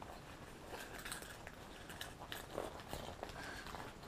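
Faint handling noise: soft rustling and small scattered clicks as hands work items into a small fabric pencil pouch.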